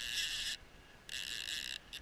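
Fishing reel drag buzzing in two short spurts of about half a second each as a hooked fish takes line beside the boat.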